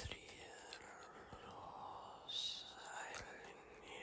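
A faint, breathy whispering voice with no clear words and a hissy breath a little past halfway, with a few soft clicks.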